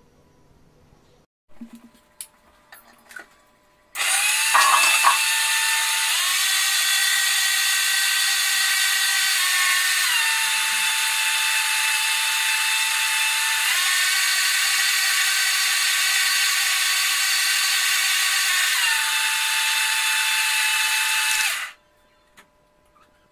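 Electric mixer grinder running loudly for about eighteen seconds, grinding garlic, ginger and dried red chillies in its steel jar, its motor pitch stepping up and down a few times before it cuts off abruptly. A few knocks come first as the jar is set in place.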